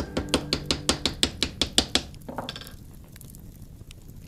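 A quick, even run of sharp clicks or taps, about seven a second, for two seconds, then stopping; faint music fades out beneath them at the start.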